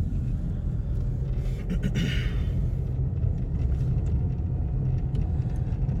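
Car cabin noise while driving: a steady low rumble of engine and tyres on the road, with a brief rush of higher-pitched noise about two seconds in.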